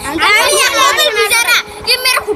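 Several children's voices shouting and chattering excitedly, high-pitched and overlapping.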